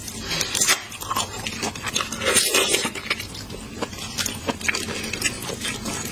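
Close-up mouth sounds of eating raw sweet shrimp: irregular wet sucking, smacking and chewing clicks.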